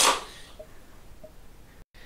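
Air hissing out of a partly blown-up rubber balloon, cutting off suddenly a fraction of a second in, then only faint room noise.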